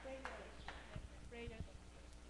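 Faint, indistinct voices of people in a church between speakers, with a few short knocks or taps and a steady low hum.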